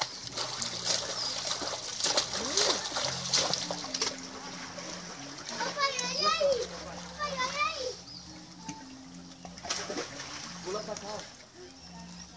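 Water splashing in a swimming pool as children swim and kick, busiest in the first few seconds and again near the end. High children's squeals and calls come in around the middle.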